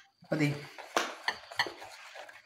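A metal spoon stirring appam batter in a ceramic bowl, clinking against the bowl's side three times in about a second, with light scraping in between.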